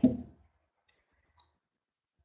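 A woman's voice trails off at the start, then a few faint computer clicks about half a second apart.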